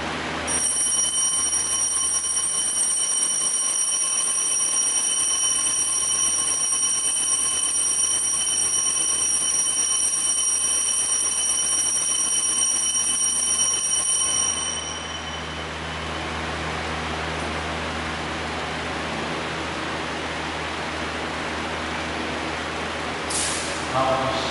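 Altar bells rung continuously while the host is elevated at the consecration: a steady high ringing for about fifteen seconds that then stops, leaving a low room hum.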